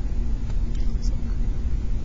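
Steady low background rumble with a faint hum, and a light click about half a second in.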